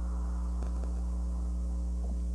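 Steady electrical mains hum: a constant low buzz with fainter higher overtones, with a couple of faint ticks well under a second in.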